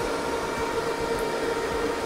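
HPE DL560 Gen10 rack server's cooling fans running steadily under full CPU benchmark load: an even whir with a constant hum-like tone.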